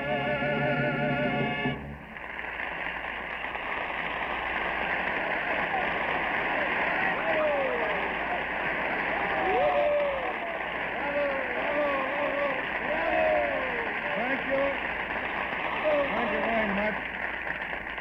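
A song's final sung note, held with vibrato, ends about two seconds in. A studio audience's applause follows, with scattered whoops, heard in the narrow band of an old radio recording.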